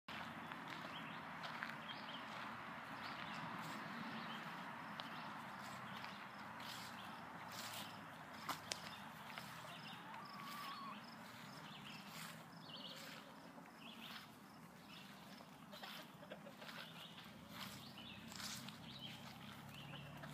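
Footsteps walking through grass, with scattered soft clicks and knocks, over quiet outdoor background sound. A short steady whistle-like note sounds about ten seconds in.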